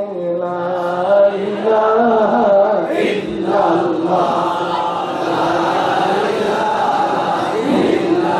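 A man chanting melodically into a microphone, holding long, slowly bending notes.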